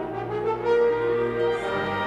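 Symphony orchestra playing long sustained chords with the brass to the fore, one held note standing out through the middle of the passage.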